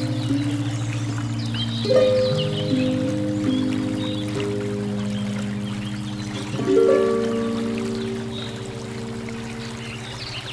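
Solo concert harp playing a slow hymn, with chords plucked about two seconds in and again near seven seconds, each left ringing and fading. Under it runs the steady rush of a shallow river over stones.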